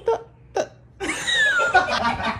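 People laughing: two short gasping bursts, then about a second in a loud, high-pitched squeal of laughter that slides down in pitch.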